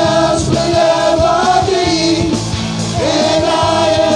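Worship band music: a group of singers holding long sung notes together, backed by electric guitar, bass guitar, keyboard and drums.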